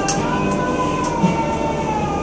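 Car tyres squealing with a sustained tone through a hard turn around the cones, the pitch rising a little and then slowly falling as the car holds its grip at the limit. The engine runs underneath, heard from inside the cabin.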